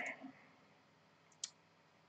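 Near silence in a small room, broken by one short, faint click about a second and a half in.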